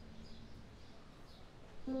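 Low background hush with a few faint bird chirps, then near the end a Steinway grand piano comes in with its first chord, several notes sounding together.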